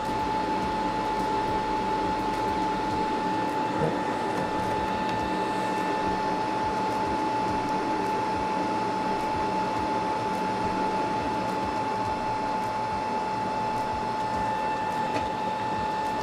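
A steady machine hum with a thin, constant whine, running evenly without change.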